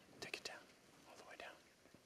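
Faint whispered voices, with a few sharp soft clicks about a quarter to half a second in.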